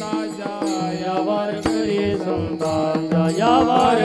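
Male voices singing a Warkari devotional chant (bhajan), with small hand cymbals (taal) striking a steady beat.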